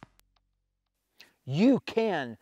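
A pause of over a second with almost nothing heard, then a man starts speaking about a second and a half in.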